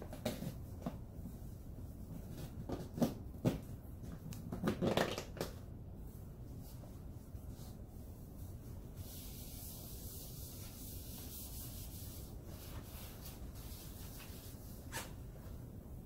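Disinfectant wipe rubbing over a countertop, with a few light knocks from items handled in the first five seconds and a soft, steady hiss of wiping in the middle.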